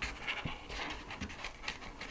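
Sheet of painted paper rustling as it is folded in half along a scored line and the crease pressed down: a run of soft, irregular rustles and faint crackles.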